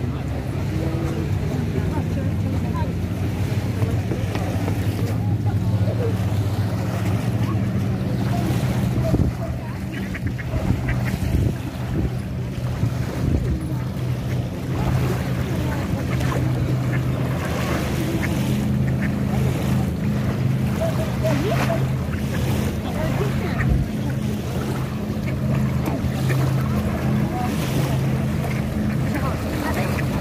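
A steady low hum, like a running motor, under small waves lapping on a sandy shore, with voices in the background.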